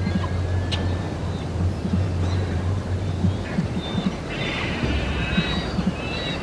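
Outdoor wind and water noise with a low steady hum that fades out about halfway through, and a few short high-pitched bird calls near the end.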